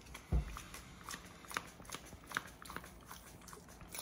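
A dull knock about a third of a second in, then faint, irregular clicks from a Wacaco Nanopresso portable espresso maker being handled and hand-pumped to build brewing pressure.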